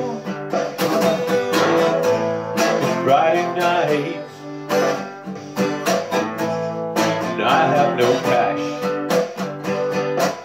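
Cutaway acoustic-electric guitar strummed in a steady rhythm, chords ringing between the strokes: the instrumental intro of a song, before the vocals come in.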